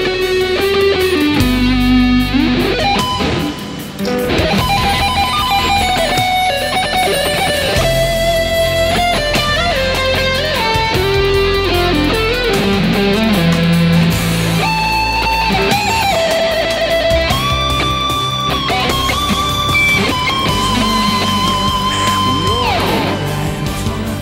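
Overdriven electric guitar playing a melodic lead solo over a rock backing track: long held notes with bends and vibrato, slides between notes and a few quicker runs, with the last notes sliding down near the end.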